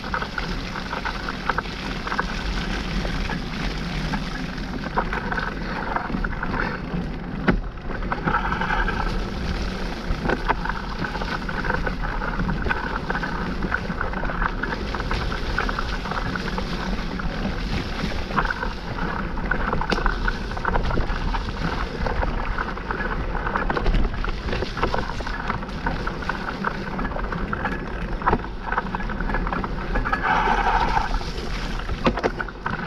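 Mountain bike ridden at speed over wet, muddy dirt singletrack: a steady rush of tyres and wind on the microphone, with frequent clicks and rattles from the bike over bumps.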